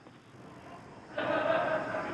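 Faint hiss, then about a second in a muffled voice-like sound holding one steady pitch sets in.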